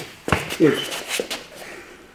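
A few short thuds and scuffs of two wrestlers' bodies and feet on a padded mat as one slips behind the other to take a rear waist hold.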